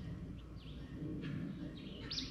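Faint bird chirps, a few short calls, over steady outdoor woodland ambience with a low background rumble.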